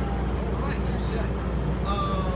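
Outdoor ambience: indistinct background voices over a steady low rumble.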